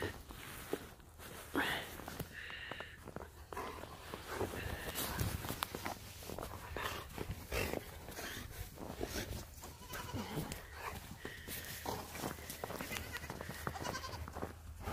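Goat kids bleating quietly a few times, the clearest call about two seconds in, over scattered scuffing and rustling of feet in snow.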